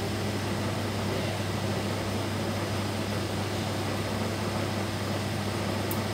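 Steady hum and fan-like hiss of running gas-analyzer equipment, with a constant low drone that does not change, and a faint tick near the end.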